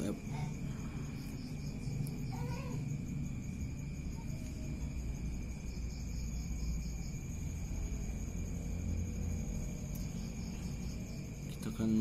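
Crickets trilling steadily, a continuous high-pitched pulsing chirr, over a low rumbling background noise.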